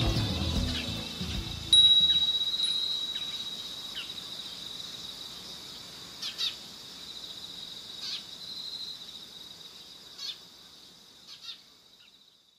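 The music stops about two seconds in. A high, steady ringing tone then starts suddenly and slowly fades away, with short chirp-like calls every second or two.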